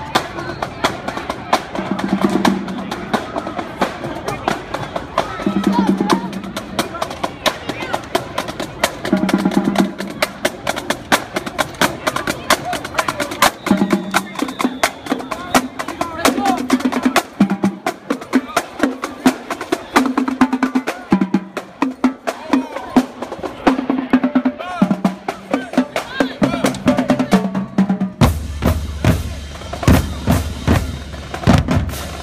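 Marching band drumline playing a street cadence: rapid snare drum strokes and rolls with cymbal crashes, and the bass drums coming in loudly about two seconds before the end.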